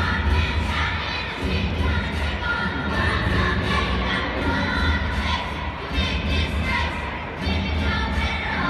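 Children's chorus singing in unison to a recorded backing track with a steady low beat, amid crowd noise.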